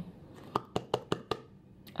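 Handling noise: about seven small, sharp clicks and taps over a second and a half from hands on the camera.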